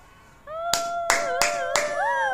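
Four hand claps, about three a second, under a high-pitched vocal note held throughout.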